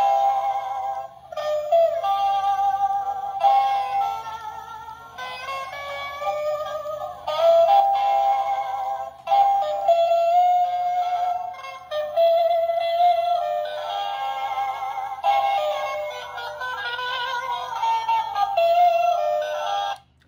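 Battery-powered hula girl doll playing a tune through its small built-in speaker as it wiggles, quite loud and thin, with no bass at all. The doll running and playing shows it works on fresh batteries.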